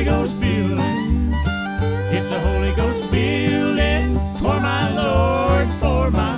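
Bluegrass gospel music played on acoustic guitars, with a steady bass beat and melody lines over it.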